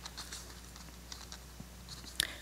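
Faint room tone with a low steady hum and a few scattered small clicks.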